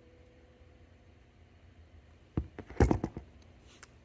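A hand tool set down on a tabletop: a quick cluster of sharp clicks and knocks about two and a half to three seconds in, as a pair of jewelry pliers is put down. Before that, near silence, with a faint tail of background music fading out.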